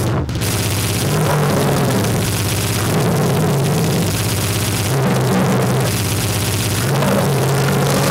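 Harsh noise (gorenoise) recording: a dense, distorted wall of noise over low droning tones that change pitch every couple of seconds, steady and loud throughout.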